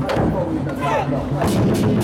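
A troupe of large Chinese war drums beaten hard together, mixed with the sharp bangs of firecrackers going off. The strokes come thicker in the second half.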